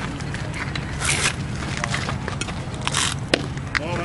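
Murmur of spectators' voices at a baseball field, with one sharp pop a little over three seconds in: a pitch smacking into the catcher's mitt.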